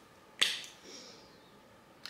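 A single spritz from a perfume bottle's spray pump: a sharp click followed by a short hiss that fades within about a second.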